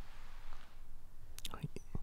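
A quiet pause between phrases: faint breathy noise, then a few small clicks near the end.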